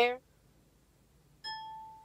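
A single electronic chime, one clear tone that starts sharply about one and a half seconds in and fades out over about half a second.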